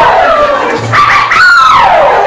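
Women's voices whooping with long pitch slides, one falling call in the first second and a second call that rises and then falls about halfway through.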